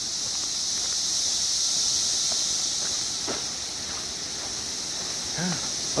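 Dense chorus of 17-year periodical cicadas: a constant high droning buzz that swells to a peak about two seconds in and then eases off a little.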